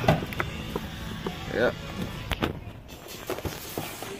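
Faint in-store background music, with a few light taps and knocks as cardboard Funko Pop boxes are handled on the shelf.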